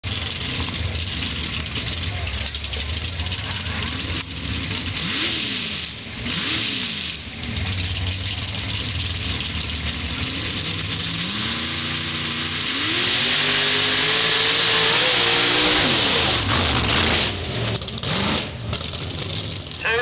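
Pickup truck engine revving in short blips, then climbing in pitch in several steps as the truck launches through the dirt, loudest about two-thirds of the way in. The throttle then lets off and the pitch falls near the end.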